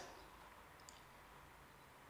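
Near silence: quiet room tone, with one faint short click about a second in.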